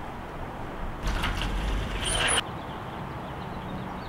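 Sliding glass patio door rolled open and shut on its track: two brief rushing rolls about a second apart, the second stopping abruptly. Underneath runs a steady low background hum.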